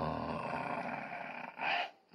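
A man's voice making one long, low, drawn-out groan that fades after about a second and a half. A short breathy sound follows near the end.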